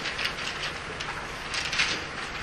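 Scratchy strokes of writing on a classroom board: several short quick strokes in the first half, then a longer, louder stroke in the second half.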